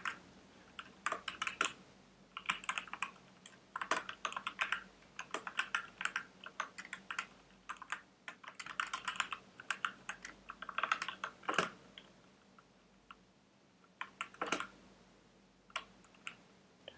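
Typing on a computer keyboard: quick bursts of keystrokes separated by short pauses, thinning to a few single key presses in the last few seconds.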